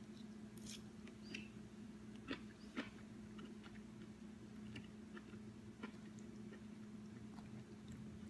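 Faint chewing of a mouthful of chicken and green beans in a thick sauce, with a few soft, scattered mouth clicks over a steady low hum.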